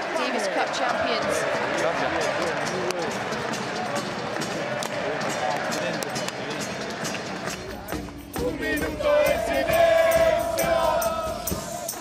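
Indoor arena crowd singing and chanting with scattered claps after the winning point.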